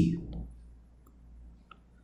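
Two faint, short clicks in an otherwise quiet pause, one about a third of a second in and one near the end.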